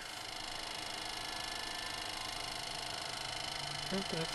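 Steady electrical hum and whir in a business-jet cockpit just powered up on battery, with faint steady whines from the avionics and equipment coming alive.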